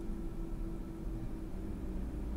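Quiet cabin sound of a Tesla Model Y creeping backwards into a parking space under Auto Park: a steady low rumble with a faint, even hum.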